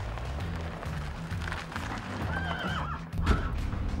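A horse shut inside a towed horse box whinnying once, a short wavering call about two and a half seconds in, over background music.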